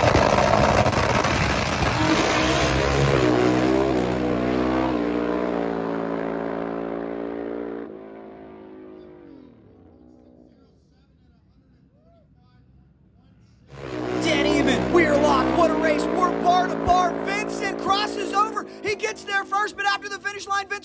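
Two drag-racing motorcycles, a turbocharged Suzuki Hayabusa and an NHRA Pro Stock bike, launching hard and running away down the strip. Their engine note climbs in steps through the gears and fades into the distance over about eight seconds. Loud engine sound returns about fourteen seconds in.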